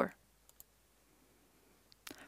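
Two faint, quick computer mouse clicks about half a second in, with another tiny click near the end, over near silence.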